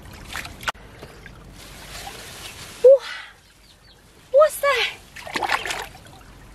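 Shallow stream water splashing and sloshing as someone wades and reaches into it by hand, in several short bursts. Short, sharp vocal exclamations break in around the middle and again just after, and are the loudest sounds.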